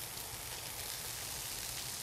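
Bacon strips and frozen burger patties sizzling steadily on a Blackstone flat-top griddle.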